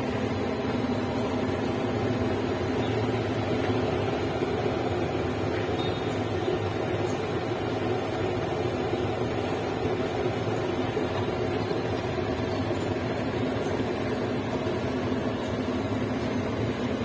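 A steady low mechanical hum that does not change, like a fan or motor running, with no distinct knocks or clicks.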